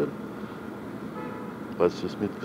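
A faint car horn sounding briefly, a little past halfway, over low street background.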